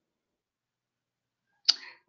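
Dead silence for most of it, then a single sharp click near the end followed by a brief faint rustle.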